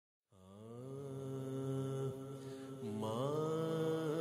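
A voice chanting long held notes, fading in just after the start, with a change of pitch about two seconds in and a rising glide to a higher note near the end.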